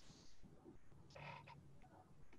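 Near silence: faint room tone, with a brief faint indistinct sound a little after a second in.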